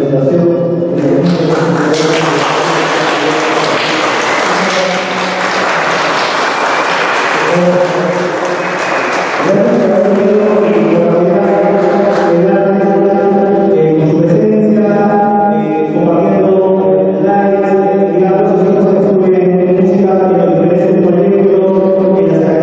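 A group of voices singing a slow melody in long held notes. Applause runs over the singing for several seconds near the start, then the singing carries on alone and a little louder.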